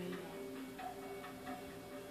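Quick, even ticking, about four ticks a second, over a steady low drone: the suspense underscore of a television crime documentary.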